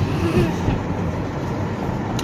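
Steady road noise of a moving car heard from inside the cabin: engine and tyre rumble with a low, even hiss.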